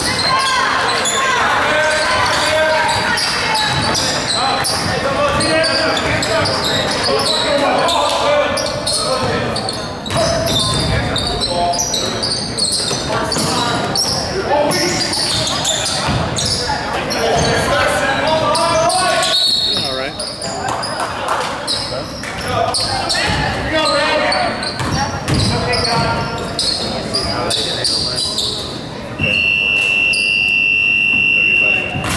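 Basketball game in a gymnasium: a ball bouncing on the hardwood floor amid players' and spectators' shouting, echoing in the large hall. About a second before the end a long, steady high-pitched signal tone starts.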